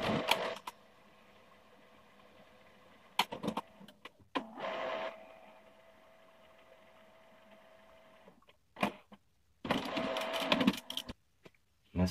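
HP LaserJet M175nw color laser printer running its internal mechanism as it cycles the toner cartridge carousel after a cartridge change: several short bursts of motor whirring and clicking, the longest near the end, with a faint steady hum between them.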